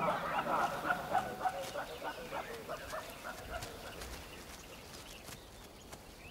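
A jumble of short animal calls, typical of a baboon troop in commotion, fading away over the few seconds.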